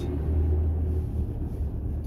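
Steady low rumble inside a car's cabin.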